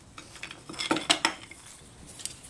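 Screwdriver and small steel parts of a dismantled hand plane clinking as they are handled and set down on the workbench, with a quick run of sharp clinks about a second in.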